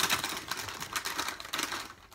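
Foil snack bag being torn open and crinkled by hand, a quick, dense run of crackles that thins out and stops near the end.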